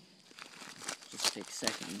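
Plastic marshmallow bag crinkling as marshmallows are pulled out of it by hand, a string of irregular crackles.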